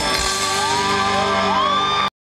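Live rock band playing held, ringing notes through a loud festival PA, with a crowd whooping and cheering over it; short rising and falling whoops come from about half a second in.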